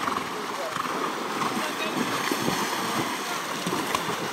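Water splashing and sloshing as horses wade through a shallow stream, a steady watery noise, with indistinct voices of riders mixed in.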